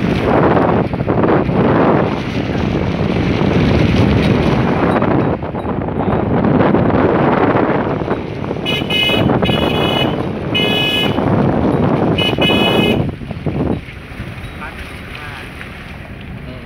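Wind rushing over the microphone of a moving vehicle, with four short blasts of a vehicle horn starting about nine seconds in. The wind noise drops away sharply just after the last blast.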